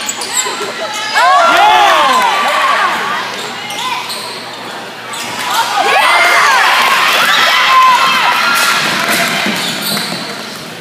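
Basketball sneakers squeaking on a hardwood gym floor in two flurries, about a second in and again about six seconds in, with a ball bouncing, over crowd voices in the echoing gym.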